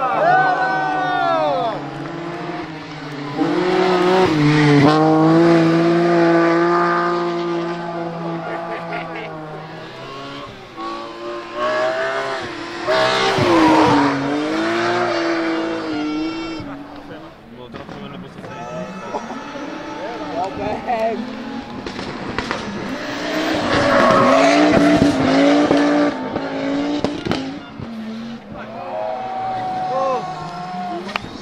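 Rally cars powersliding one after another through a tight corner: engines revving hard, pitch rising and falling with throttle and gear changes, with tyre squeal. There are several separate passes, loudest at about four to nine seconds, around thirteen seconds and again about twenty-four seconds in, with the next car arriving at the end.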